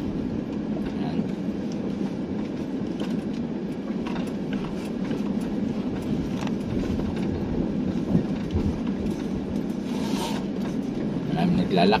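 Steady low engine and road noise heard inside a car's cabin while driving slowly, with a brief hiss about ten seconds in.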